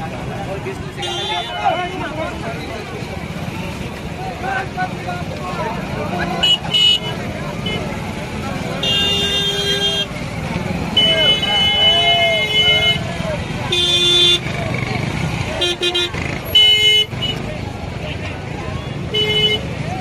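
Vehicle horns honking repeatedly, some short toots and some held for a second or two, over the steady chatter of a large outdoor crowd.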